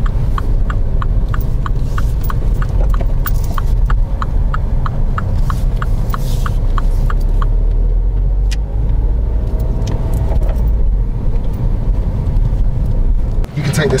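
Turn indicator ticking in a Mini's cabin for a right turn, even clicks about four a second, stopping about seven and a half seconds in, over the car's steady low road and engine rumble.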